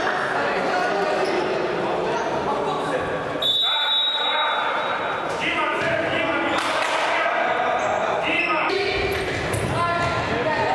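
Futsal players' voices calling and talking in a reverberant sports hall, with the ball's kicks and bounces on the hard floor. About three and a half seconds in, a steady high whistle sounds for about a second, the referee's whistle.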